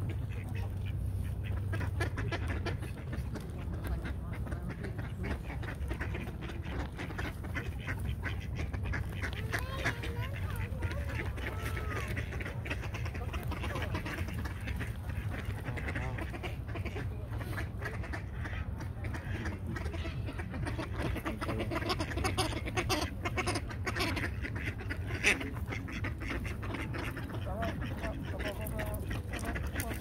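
Mallard ducks quacking now and then over a steady low rumble, with people's voices in the background.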